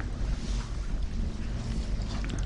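Steady rushing background noise with a low hum underneath, fairly even in level throughout.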